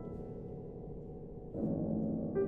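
Grand piano playing a slow, resonant passage: a held chord rings on with several notes sustaining, then a new, louder low chord is struck about one and a half seconds in and rings out.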